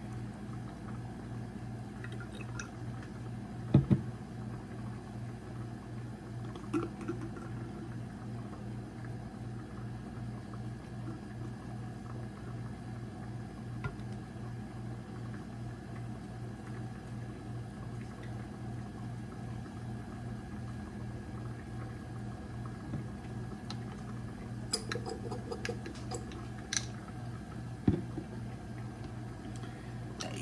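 Steady low hum of a quiet room, broken by a few short clicks and knocks as bottles and a plastic dropper are handled on a countertop, the sharpest one about four seconds in and a small cluster near the end.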